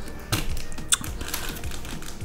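Cardboard shipping box wrapped in plastic film being tipped and handled on a table: a scatter of light taps and clicks with faint rustling.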